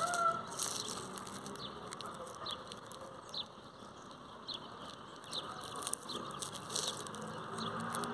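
Faint outdoor ambience with scattered short, high chirps from birds.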